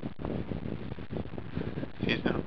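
Wind noise on the camera's microphone: a steady rush with a low rumble.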